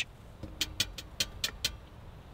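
About six light clicks in quick succession as the tent's wood stove is reached for and handled.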